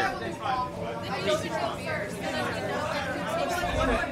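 Several people talking at once: overlapping background chatter of a group, with men's and women's voices, a little quieter than close-up talk.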